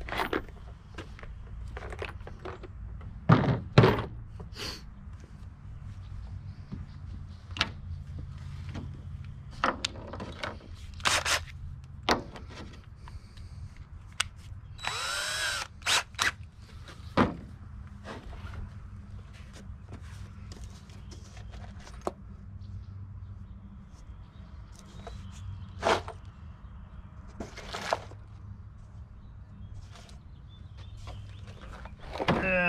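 Clicks and knocks of small hardware and tools being handled on a workbench, with two heavier thumps early on. About halfway through, a DeWalt 20V cordless drill spins briefly, its motor whine rising and falling for under a second.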